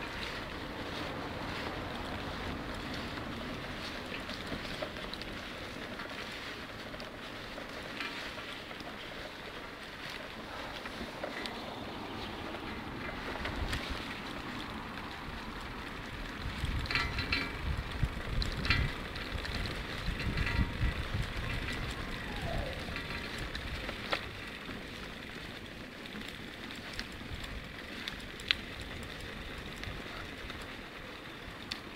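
Wind buffeting a phone's microphone over the steady rolling noise of riding along a brick-paved street, with heavier low gusts about halfway through and a few light clicks.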